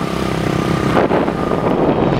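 Motorcycle engine running while riding, with wind buffeting the microphone.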